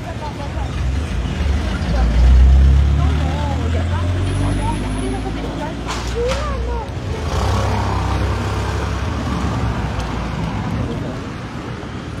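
Street traffic noise: a low vehicle rumble, loudest two to three seconds in, with a second passing swell of road noise later on. Faint voices of people nearby sound underneath.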